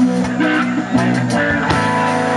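Live rock band playing an instrumental passage: electric and acoustic guitars over bass and drums, with no singing.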